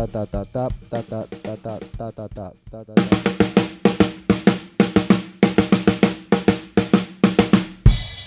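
A voice sounding out a rhythm in short syllables, then, from about three seconds in, a drum kit played with sticks: a quick, steady run of strokes on snare and toms working through a four-beat rhythmic pattern.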